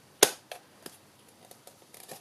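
A single sharp plastic click about a quarter of a second in, then a few faint light ticks: stamping supplies being handled and set down on the craft table.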